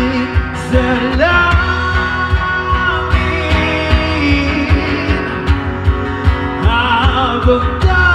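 Live band music: a male vocalist singing long held, sliding notes over a strummed acoustic guitar, with a steady low thumping percussion beat.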